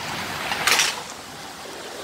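Heavy storm rain pouring down, a steady rushing noise, with a brief louder burst of noise well under a second in.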